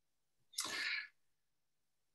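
A single short breathy sound from a person, about half a second long and much quieter than the speech around it.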